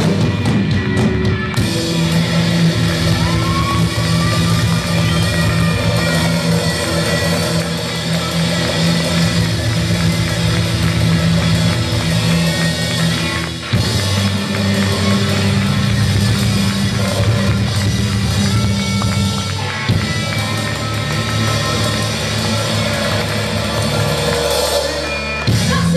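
Live rock band playing loud: electric guitars over a drum kit, with a momentary break about fourteen seconds in.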